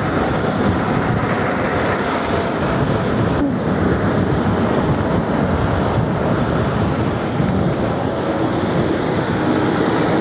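Steady rush of wind on the microphone with road and tyre noise from the Nanrobot N6 72V electric scooter riding at about 30 mph, with faint whines that slide slowly in pitch.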